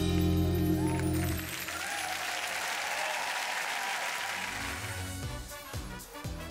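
Dance music ends on a long held final chord, and about a second and a half in the studio audience breaks into applause. Near the end a different piece of music starts.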